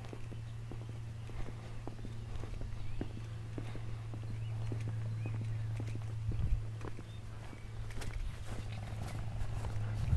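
Footsteps of a person walking, heard as irregular soft steps, over a steady low hum.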